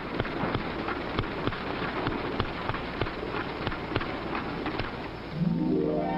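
Manual typewriter keys clacking in a quick, irregular patter over the hiss of an old film soundtrack. Music comes in near the end.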